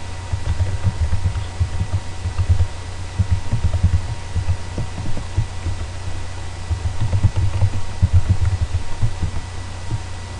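Computer keyboard typing, the keystrokes coming through as runs of quick, dull low thumps with short pauses between them, over a steady faint electrical hum.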